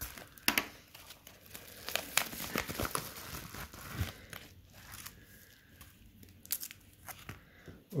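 Yellow paper padded mailer crinkling and rustling in the hands as it is opened, in short irregular crackles.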